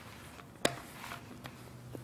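Light plastic rolling pin rolling pie dough over a floured pastry mat, faint, with one sharp click about two-thirds of a second in.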